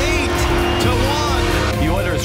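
Background music with a steady held note, with a voice heard briefly near the start and again near the end.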